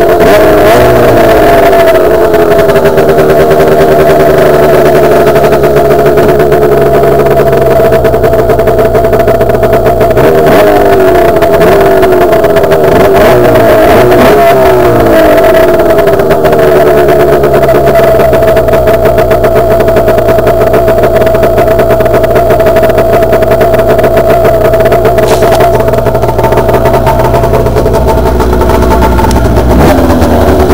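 Arctic Cat ZR 600 snowmobile's two-stroke twin running loud just after a cold start. The revs settle down in the first seconds, then rise and fall a few times from about ten to sixteen seconds in, as the throttle is blipped.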